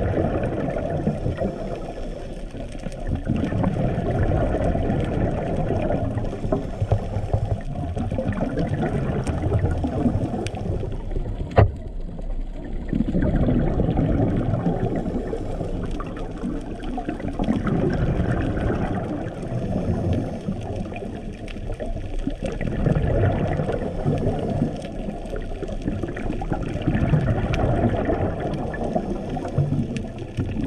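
Muffled underwater rumble of a scuba diver breathing through a regulator, swelling and easing every few seconds with each breath and the exhaled bubbles. There is one sharp click partway through.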